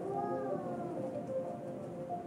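Ambient music with steady held tones, and a short pitched call over it in the first second that rises and then falls, like a meow.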